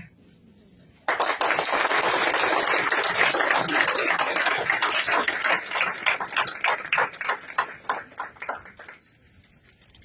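Audience applauding: the applause starts suddenly about a second in, thins into separate claps in the second half, and dies away about a second before the end.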